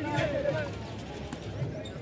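Men's voices talking on an open cricket field, with a short sharp click about a second and a half in.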